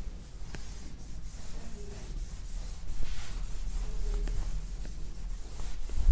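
Dry rubbing and scratching against a smart board's surface as writing on it is wiped away and written, with a few light ticks and a steady low hum underneath.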